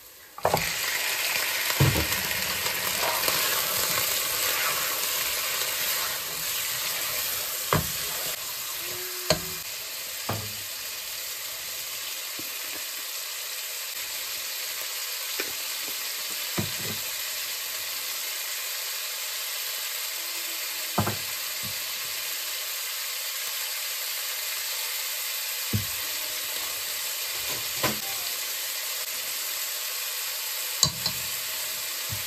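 Chunks of meat dropped into a pot of onions frying in hot oil, setting off a loud sizzle about half a second in that then carries on steadily and slowly eases. A few sharp knocks stand out over the sizzle.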